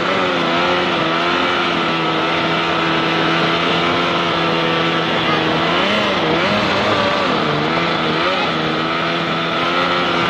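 Jet-drive jon boat's engine running steadily at speed, over a rush of water along the hull. The engine pitch wavers briefly a few times in the second half.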